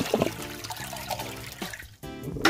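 Water running steadily through a small sluice box over a ribbed gold-recovery mat as dredge concentrates are washed through, fading out near the end.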